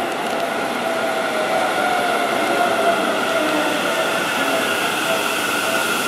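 Seibu Railway electric commuter train moving slowly along the platform, its motors whining in several steady tones that drift slightly in pitch over the rumble of the wheels.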